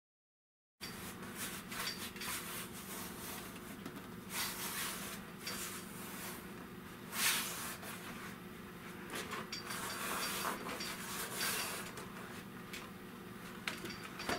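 Vinyl upholstery sheet and a metal dashboard panel being handled on a workbench: rustling, rubbing and light scraping, with a few louder brushes, over a steady low hum. The sound cuts in after a moment of silence.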